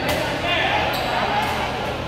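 Two sharp hits of badminton rackets on a shuttlecock, about a second apart, echoing in a large sports hall, with people talking.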